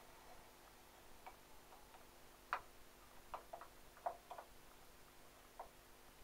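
Near silence broken by a few faint, irregular clicks and light taps from hands handling something on a tabletop, the loudest about two and a half seconds in.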